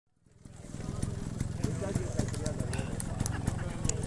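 Trials motorcycle engines idling with a steady low pulsing, fading in over the first half second, with voices chatting in the background.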